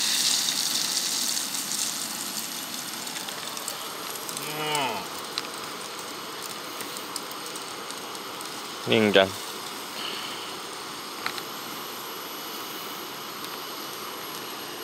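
Beaten egg poured into a hot aluminium pot over a wood fire, sizzling loudly at first and settling over a few seconds into a steady, softer sizzle. A few faint crackles from the fire.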